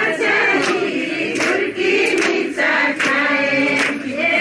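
A group of women singing a traditional Darai Sohrai dance song together, with sharp strikes recurring at a regular beat to keep time.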